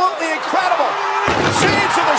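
Arena crowd shouting and cheering, with a heavy crash about a second and a quarter in as a wrestler's body goes through a table.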